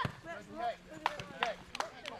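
Children's high-pitched shouts and calls during open play in a junior rugby game, with several sharp knocks: one at the start and three more in the second half.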